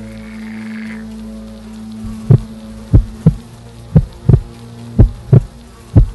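Film soundtrack: a low steady drone, then from about two seconds in a heartbeat effect of deep double thumps, about one pair a second.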